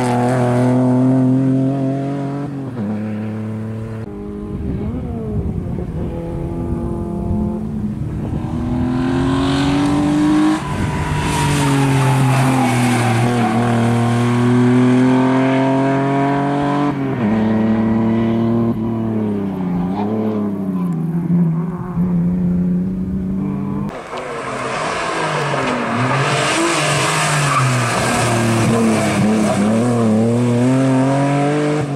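BMW E36 sedan being driven hard through slides: its engine revs climb and fall again and again as the throttle is worked, with stretches of tyre squeal, loudest from about a third of the way in to about halfway and again near the end.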